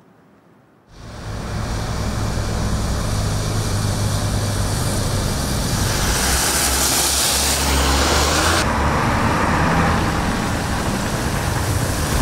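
Street traffic on an icy road: cars running and passing, a steady rumble that comes in about a second in. A brighter, hissier stretch in the middle ends abruptly.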